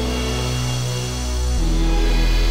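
Elektron Octatrack sampler playing back a sampled major-triad chord over a low bass note, part of a progression where each chord is a major triad transposed over a bass note to stand in for minor and altered chords. The chord and bass note change about one and a half seconds in.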